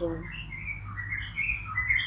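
Small birds chirping: a run of short, high chirps, some gliding up or down, over a steady low hum.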